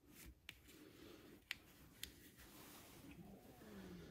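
Near silence: room tone, with a few faint clicks.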